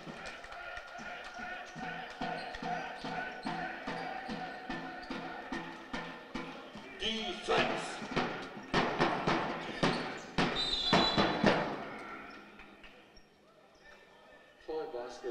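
Basketball bouncing on a hardwood court, about two bounces a second, over the voices of a crowd in the hall. From about seven seconds in come louder, denser knocks of play on the court, which fade near the end.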